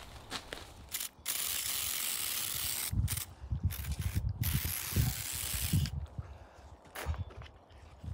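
Handheld Aquabot pump sprayer spraying water in a steady hiss for about five seconds, broken by a few short stops, with low knocks from handling under it. A few clicks come before the spray starts.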